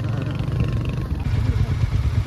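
Motorcycle engine running steadily while riding, a low, even drone with a light haze of wind and road noise over it.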